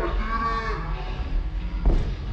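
A drawn-out, pitched vocal sound in the first second, then a single sharp thud just before the end, over a steady low hum.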